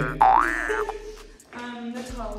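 A high, swooping tone that glides down and back up within the first second, like a cartoon boing sound effect, over a low musical bed.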